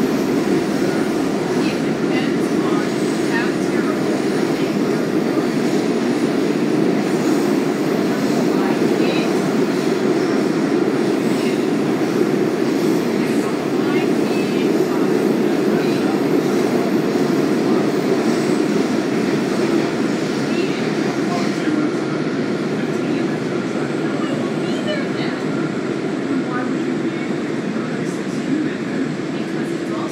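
Interior running noise of a WMATA Kawasaki 7000-series metro car under way between stations: a steady rumble of wheels on rail and car body that eases slightly over the last several seconds.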